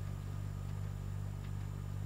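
A steady low hum with a faint hiss over it and no distinct events.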